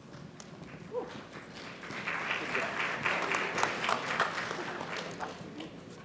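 Audience applauding, swelling about two seconds in and fading out near the end.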